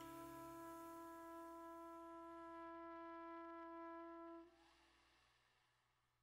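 Trumpet holding one long, steady final note to end a jazz tune. It cuts off about four and a half seconds in, leaving a short fading ring.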